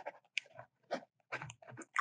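Faint, scattered clicks and crackles, a dozen or so short sounds with near silence between them.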